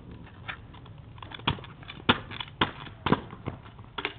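A kick scooter landing a run of hops, a series of sharp clattering knocks about twice a second that grow louder from about one and a half seconds in.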